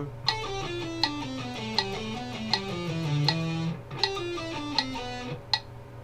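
Electric guitar playing a fast descending single-note scale sequence with a clean tone, over a metronome clicking about every three-quarters of a second. The run breaks off a little past halfway, restarts, and stops again about a second before the end: the player has fumbled the exercise.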